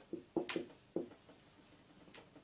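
Marker pen writing on a whiteboard: a few short, separate strokes, most of them in the first second.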